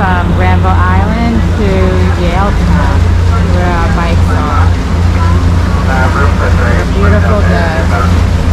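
Small passenger ferry's engine running with a steady low hum, under voices that don't form clear words.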